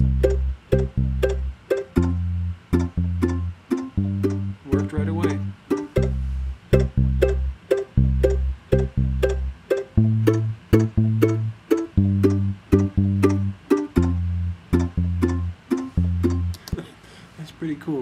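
Apple Loops playing back in Logic Pro: a picked mandolin in a steady, quick rhythm over a low electric bass part. The bass notes change pitch about every two seconds, the loops following the entered chord progression.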